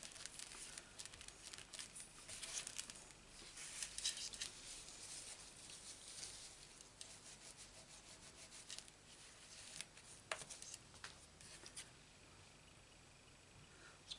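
Faint rubbing and rustling of fingers and a paper tissue on cardstock as a freshly glued paper circle is pressed down and the excess glue wiped away, with a few light clicks in the second half.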